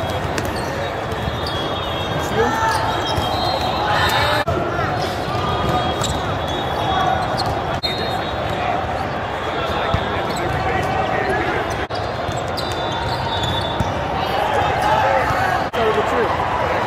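Volleyballs being struck and bouncing off the floor in a large multi-court hall, with a steady babble of players' and spectators' voices underneath.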